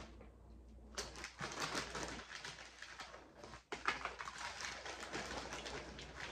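Plastic snack-chip bag crinkling and crackling in irregular bursts as a hand rummages in it and pulls chips out. The crackling starts about a second in.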